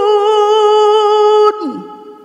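A Qur'an reciter's voice holding one long, steady, high note in melodic tilawah. It breaks off about one and a half seconds in, leaving a short echo that dies away.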